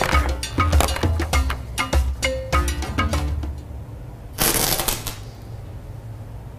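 Background music with a steady beat. About four and a half seconds in comes a short, loud burst of rushing noise lasting under a second: charcoal flaring up violently the moment fluorine gas touches it.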